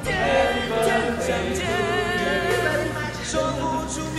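Several voices singing a Chinese-language birthday song together, with held, wavering notes.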